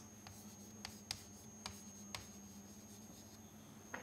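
Chalk writing on a chalkboard: faint scratching with a handful of short taps over the first two seconds or so as a word and an arrow are chalked up.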